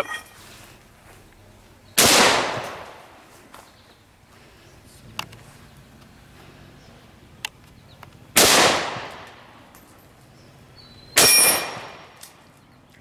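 Three rifle shots, each ringing out and fading over about a second: one about two seconds in, one past the middle and one near the end, with two faint ticks between the first and second.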